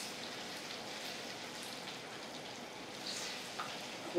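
Hot medicinal oil mixture sizzling steadily in a pot on the heat as a herbal rubbing ointment is cooked.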